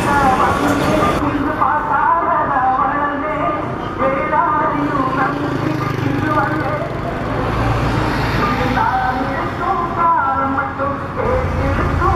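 People talking close by over street traffic, with a bus engine rumbling past in the middle.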